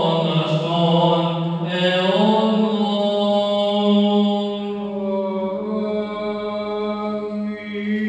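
A man's voice chanting an Orthodox liturgical prayer, holding long, steady notes and moving to a new pitch about two seconds in and again near six seconds.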